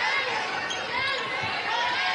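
A basketball bouncing on the hardwood court during live play, over the steady murmur of the arena crowd and voices.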